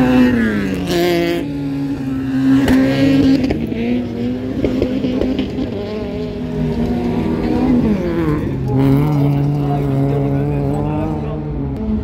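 Racing car engines on a dirt track: one car passes close with its engine note dropping sharply just at the start, then engine notes keep rising and falling as cars accelerate and lift off around the circuit.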